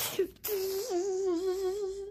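A child's voice making a breathy whoosh, then humming one long wavering note for about a second and a half.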